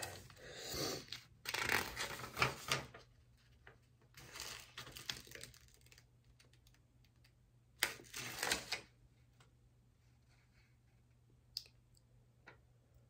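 Paper pages of a spiral-bound notebook being turned and rustled by hand, in four short bursts spread over the seconds, with a light click near the end.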